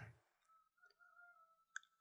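Near silence, with the end of a spoken exclamation fading out at the very start and a single faint click near the end.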